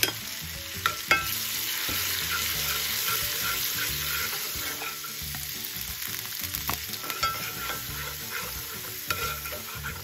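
Garlic butter sauce sizzling steadily in a hot cast iron skillet as it is stirred, with a few sharp clicks of the utensil against the pan about a second in and again near the end.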